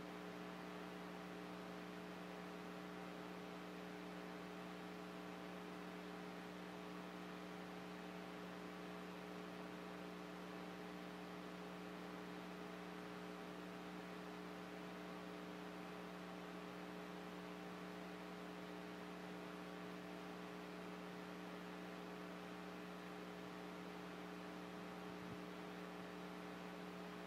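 Steady electrical mains hum in the recording's sound system, a low hum of several steady tones over faint hiss, unchanging throughout.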